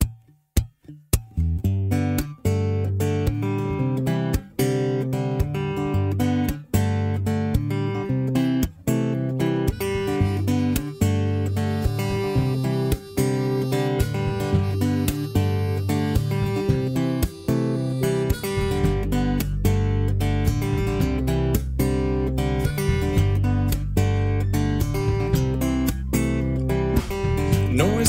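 Instrumental opening of a folk-pop band song: acoustic guitar strummed in a steady rhythm, with a deep bass part joining about two-thirds of the way through.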